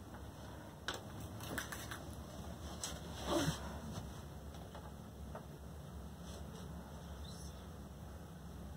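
Chalk on a chalkboard as numbers are written: a few faint, sharp taps and scrapes, with one short louder sound about three and a half seconds in.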